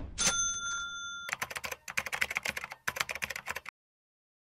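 Edited-in sound effects: a bright bell-like ding rings for about a second, then a rapid run of keyboard-typing clicks that cuts off sharply shortly before the end.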